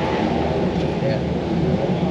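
Race car engines running steadily nearby, a constant low rumble with no break.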